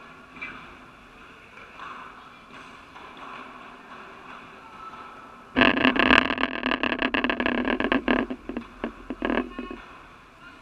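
Loud, close scraping and rustling right against the microphone, starting suddenly about halfway through and lasting about four seconds, thinning to a few scrapes near the end. Before it, a few faint distant padel ball strikes.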